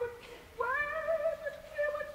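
Operatic soprano singing alone: a note that swoops up about half a second in and is held for about a second, then two short notes.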